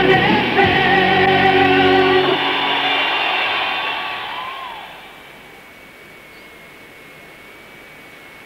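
Rock music with singing, heard over medium-wave radio, stops about two seconds in and dies away. It leaves a steady, much quieter radio hiss with a faint high whistle as the medium-wave service closes down for the night.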